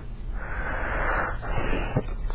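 A woman's audible breath through the open mouth: a hissing breath lasting about a second, then a shorter hiss near the end.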